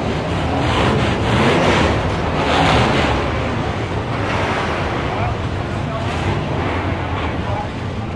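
Wind noise on the microphone, swelling and easing, over a background of people talking.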